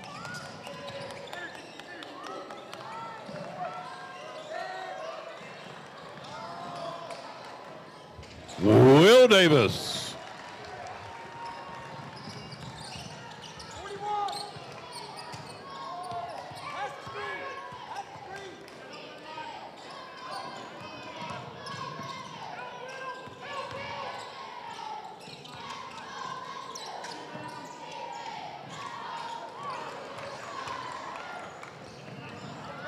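Gym ambience at a basketball game: crowd chatter from the stands and a basketball bouncing on the hardwood floor. About eight and a half seconds in comes one loud burst of noise lasting about a second and a half, sliding in pitch, far louder than anything else.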